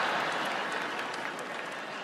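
A large studio audience laughing and applauding in reaction to a joke, the noise slowly dying down.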